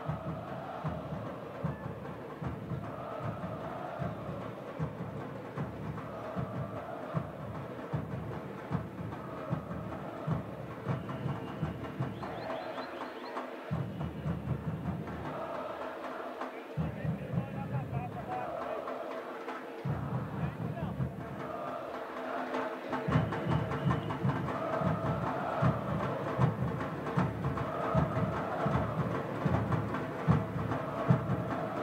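Football supporters' drums beating a steady rhythm under crowd singing. The drums stop twice for a few seconds in the middle and come back louder near the end.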